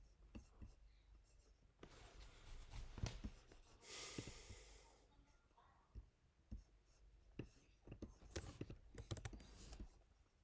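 Very faint room sound with scattered soft clicks throughout and a brief hiss-like rustle about four seconds in.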